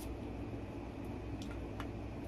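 Steady low hum of a room fan, with a few faint clicks as a glass perfume bottle is handled.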